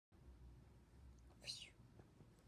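A faint, short whisper about one and a half seconds in, over a low, quiet rumble.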